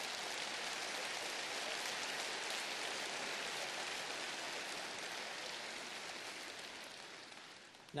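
Audience applauding, holding steady and then slowly dying away near the end.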